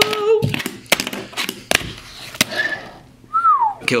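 A fingerboard being flicked through a trick on a hard desktop: sharp clicks and clacks of the board popping and landing, about four in the first two and a half seconds. A short falling vocal note follows near the end.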